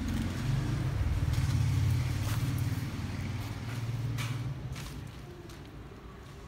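A low rumble that builds over the first two seconds and fades out near the end, with a couple of sharp slaps from footsteps in flip-flops on a bare concrete floor.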